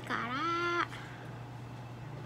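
A single drawn-out voiced cry lasting under a second. It dips in pitch, rises and holds steady, then cuts off abruptly.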